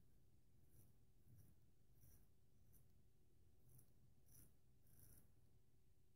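Faint scraping of a vintage Wade & Butcher 15/16 wedge straight razor cutting stubble through lather on the neck, in short strokes, about seven of them.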